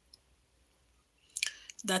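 A pause with near silence, then a short click about one and a half seconds in, just before a woman's voice resumes with a single word.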